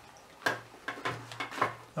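A few light clicks and knocks, about six in two seconds, the first the loudest: a multimeter and its test leads being handled and set down on a workbench.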